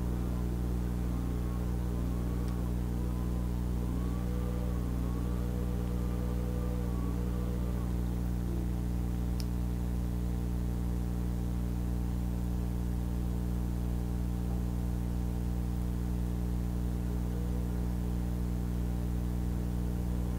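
A steady low hum, with faint wavering tones in the first half.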